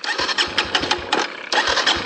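Kawasaki KLX140RF dirt bike's single-cylinder four-stroke engine being turned over in a rapid, uneven chug without firing. It is a failed start attempt: the engine will not run.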